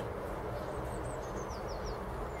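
Quiet outdoor ambience with a steady low rumble, and a small bird's faint quick run of high chirps, each falling in pitch, in the second half.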